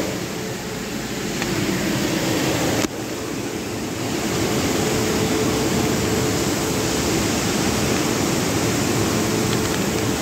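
Steady rushing noise with a faint steady hum underneath, broken by a sudden cut about three seconds in.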